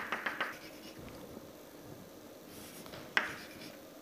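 Chalk on a chalkboard: a quick run of short tapping strokes, as a dashed line is drawn, in the first half-second, then one sharper chalk stroke about three seconds in.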